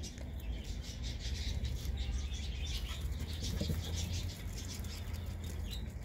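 Rabbits eating pellets and leaves: rapid fine crunching and chewing, with rustling of straw bedding, over a low steady rumble.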